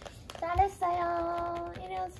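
A high, child-like voice singing a short jingle of long, steady held notes, the first starting about half a second in and held for close to a second, the next beginning near the end.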